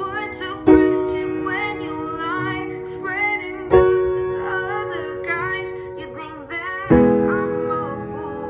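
Upright piano chords struck three times, about three seconds apart, each left to ring, with a female voice singing the melody over them.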